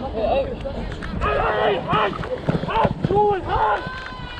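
Young players' voices shouting calls during open rugby play, over the running footsteps of the camera-wearing referee and a low wind rumble on the body-worn microphone.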